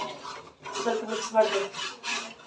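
A spoon scraping and stirring inside a steel cooking pot, a rasping scrape of metal on the pot.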